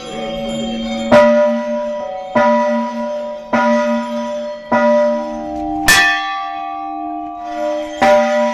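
A large hanging temple bell is struck over and over, about once every 1.2 seconds, and each stroke rings on into the next. A second bell of a different pitch joins a little after the middle. The loudest, sharpest strike comes about six seconds in.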